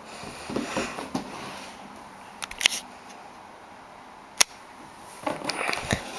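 Cardboard DVD box set being handled and opened, its panels folding open: scattered cardboard rustles and scrapes, a few light clicks, and one sharp click a little past the middle.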